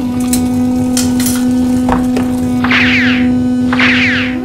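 Experimental electronic synthesizer soundscape: a steady low drone tone that steps down slightly in pitch at the very start, with scattered sharp noisy clicks over it. In the second half come two short bursts of rapidly falling high chirps, about a second apart.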